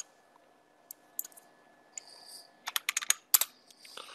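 Computer keyboard and mouse clicking: a few scattered single clicks, then a quick run of several clicks about three seconds in.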